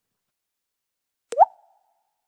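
A single short pop-like bloop well over a second in: a sharp click and then a quick upward glide in pitch that dies away in a fraction of a second. It is typical of a pop sound effect. Before it there is near silence.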